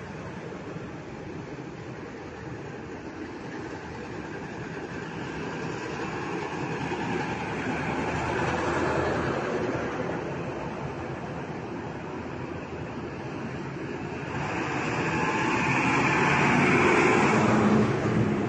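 A convoy of heavy military trucks driving past one after another, engines running and tyres on the road. The sound grows louder as trucks near, about halfway through and again near the end.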